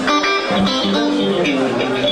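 Amplified Stratocaster-style electric guitar played as a few separate single notes and short phrases, each note ringing on briefly, with voices talking underneath.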